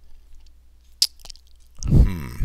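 A single sharp click about a second in, followed by a few faint ticks, then a person's voice starting up near the end.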